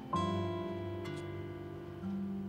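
Soundtrack music: an acoustic guitar chord is plucked and left to ring down slowly, and a second chord comes in about a second later.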